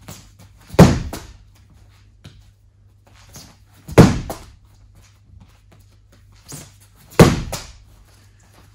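A medicine ball punched hard into a padded wall three times, about three seconds apart: three loud thuds, each trailing off briefly, with a few quieter thumps between them.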